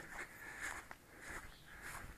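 Faint soft rustles, three or so: footsteps through grass and brushing past plants.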